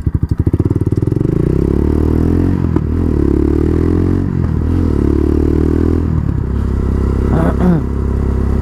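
Quad bike engine pulling away, its slow putter at low revs speeding up within the first second into steady running. The revs dip briefly twice, about three and four and a half seconds in, and drop lower about six seconds in.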